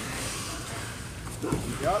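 Steady background noise of a large gym hall, then a man's voice calling out "yeah" near the end.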